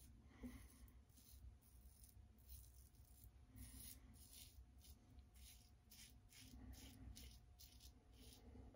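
Faint scratching of a Leaf Shave Thorn razor's blade cutting lathered neck stubble: a dozen or so short strokes, coming faster in the second half.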